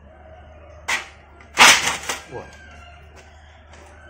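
Live snakehead fish thrashing in a metal basin of water, two sudden splashes, the second louder and longer; the fish are still lively.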